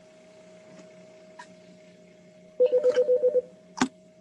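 A faint steady electrical hum from an open call line, then a loud trilling electronic tone for under a second, pulsing about ten times a second, and a sharp click just before the end.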